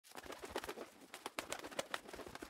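Sound effect of fluttering wings: a rapid, irregular run of soft flaps.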